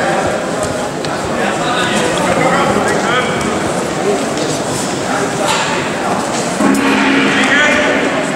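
Many voices talking and calling out at once in a large, echoing sports hall around a judo bout, with several short loud shouts cutting through the hubbub.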